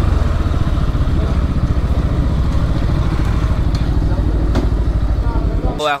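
Motorcycle engine running steadily at low revs, a low, evenly pulsing rumble that cuts off abruptly near the end.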